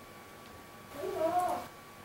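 A single short meow-like call about a second in, rising and then falling in pitch.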